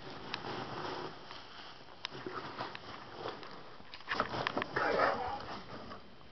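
Foam packing peanuts rustling and crunching in a cardboard dig box as a ferret burrows through them and a hand stirs them, with scattered sharp clicks and scrapes. It is busiest about four to five seconds in.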